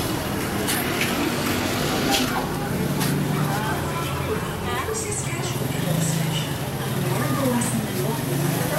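Indistinct voices of people nearby over a steady low motor-vehicle engine hum from the street, with scattered light clicks and knocks.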